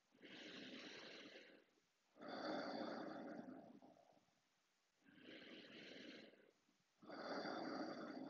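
A man taking slow, deep breaths in and out: four breath sounds, each about one and a half to two seconds long with short pauses between, making two full breath cycles. These are the deep belly-to-chest inhalations and easy exhalations of a breathing exercise.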